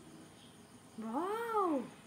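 Cat meowing once about a second in, a call just under a second long whose pitch rises and then falls.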